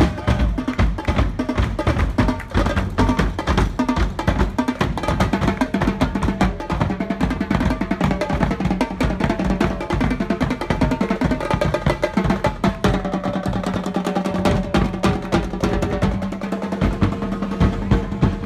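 Drum group playing bass drum and other drums in a fast, unbroken beat.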